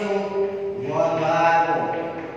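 Speech only: a man talking, with some long, drawn-out syllables.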